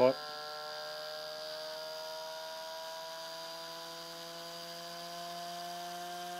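Modified VCR head drum motor spinning under the pulses of a Bedini SSG circuit, giving off a steady whine of several tones. The pitch creeps slowly upward as the motor gathers speed after its potentiometer is adjusted.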